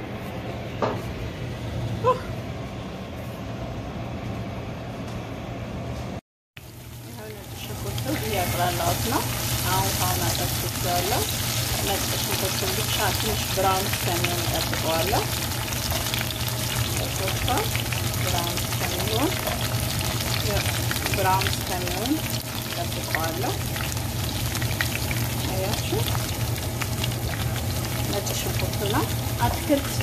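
Chopped food sizzling as it fries in a nonstick frying pan while it is stirred with a silicone spatula. The sizzling starts about seven seconds in, after a brief dropout, and then runs steadily over a low hum.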